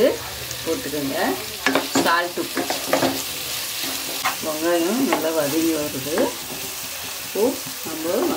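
Onions, green chillies and curry leaves frying in oil, sizzling while a wooden spatula is stirred through them, scraping and squeaking against the pan in several spells of strokes.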